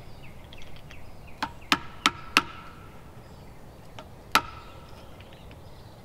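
A hand tool chopping into wood in sharp strikes: four come in quick succession about a third of a second apart, then one more after a pause of about two seconds.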